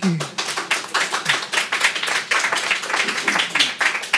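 Audience applauding: many hands clapping in a quick, irregular patter after a spoken "thank you".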